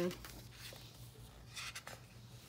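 Paper sticker-book pages being turned over, a soft papery rustle with a short flurry of crisp rustles near the end.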